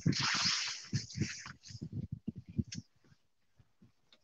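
Rustling and a run of irregular soft knocks as the pilot shifts about in the microlight trike's seat, with the engine not running. Quiet for the last second.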